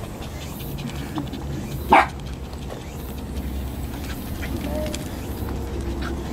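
A dog gives a single short, sharp bark about two seconds in, over a low steady rumble and faint voices.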